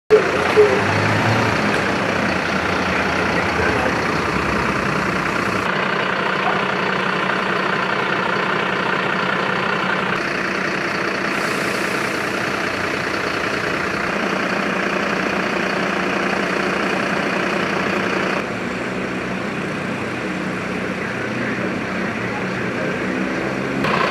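Engines of a fire engine and other emergency vehicles running steadily, a heavy truck idling. The sound changes abruptly several times.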